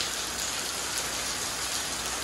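Steady rain falling on wet paving and on a plastic rain barrel that is full and spilling over under its downspout.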